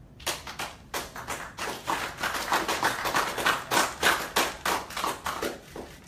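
Applause from a small group in a room, with single claps heard. It starts just after a pause, grows thicker in the middle and thins out near the end.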